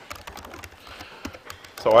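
Computer keyboard typing: faint, irregular key clicks, with a man's voice starting near the end.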